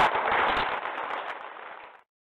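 Audience applauding, a dense patter of sharp claps loudest at the start and fading away before it cuts off suddenly at the end.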